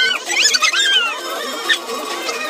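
Latex balloons squeaking as they are rubbed and squashed: a cluster of short, high, arching squeaks in the first second, thinning out after.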